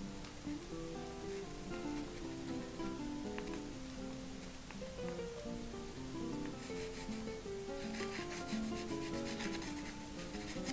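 Pastel stick scratching across a textured painting surface in rapid strokes, growing louder and busier in the last few seconds, over soft acoustic guitar music.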